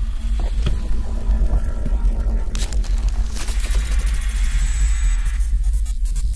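Electronic music with a deep, steady bass throb, and a swell of hiss that builds about two and a half seconds in and fades a second later.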